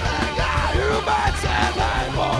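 Live hard rock band playing drums, electric guitar and bass, with the singer's shouted vocals on top. It is heard as a direct soundboard mix.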